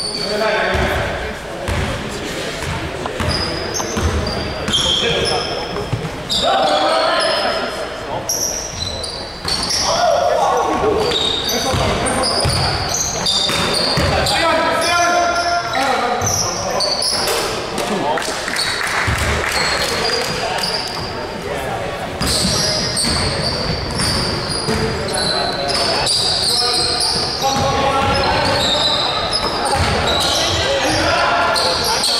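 Basketball game play in a large echoing gym: the ball bouncing on the hardwood floor, short high squeaks of shoes on the court, and players calling out.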